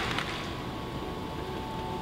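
Steady hiss of room noise in a large auditorium, with a faint held tone.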